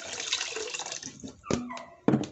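Water pouring and splashing into a pot as rice is readied for cooking, with one sharp knock about one and a half seconds in.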